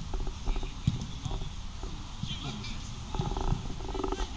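Players shouting and calling across a football pitch during open play, over a steady low rumble with scattered knocks.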